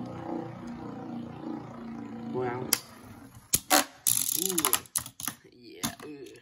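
Two Beyblades spinning on a plastic stadium floor with a steady whirring, then, from about halfway, several sharp clacks and short rattles as they hit. The new variant bey's pop-out blades have deployed, and the hits drain its spin.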